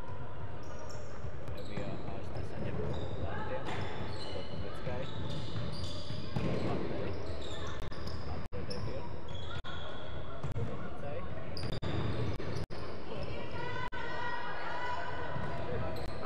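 Sneakers squeaking and footsteps on the wooden floor of a large sports hall as players run, with voices in the background; many short, high squeaks come and go throughout, and the sound cuts out for an instant several times in the second half.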